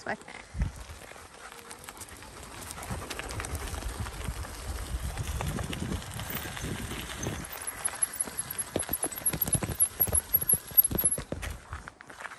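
Electric bike's tyres rolling over a loose gravel track: a steady crunching rumble that builds over the first couple of seconds, turning into dense crackling of stones over the last few seconds.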